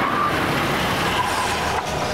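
A car running: a steady noisy sound with no pitch to it, which drops in level briefly near the end.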